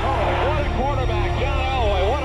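Unintelligible excited male voice with rising and falling pitch, over a held tone and a steady low rumble.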